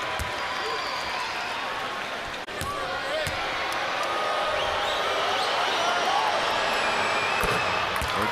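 Arena crowd murmur with scattered voices during free throws, broken by a few thuds of a basketball bouncing on the hardwood court.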